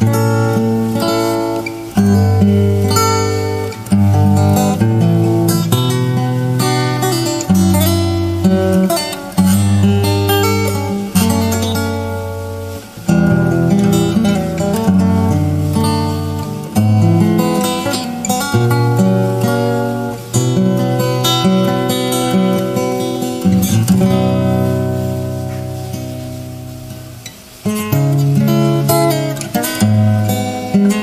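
Solo Cort acoustic guitar played fingerstyle: plucked bass notes ringing under a melody line. Late on a chord is left to ring and fade before the playing picks up again.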